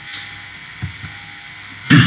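A pause in a man's speech: faint steady room noise with a brief soft sound a little before the middle, then his speech starting again near the end.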